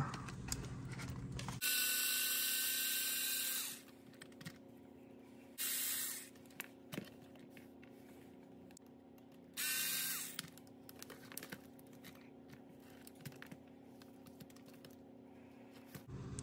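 Small cordless electric screwdriver running in three short bursts, one of about two seconds and then two shorter ones about four seconds apart, backing the screws out of an RC crawler's shock mounts. Light clicks of small parts being handled come between the bursts.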